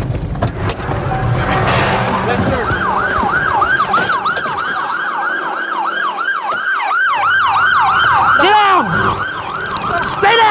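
Police car siren on its fast yelp, a rapid rising-and-falling wail about three times a second, starting about two and a half seconds in. Near the end, a siren's pitch slides sharply down.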